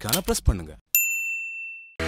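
A single bright bell ding, a notification-bell sound effect for pressing the bell icon. It is struck about a second in and fades away over about a second.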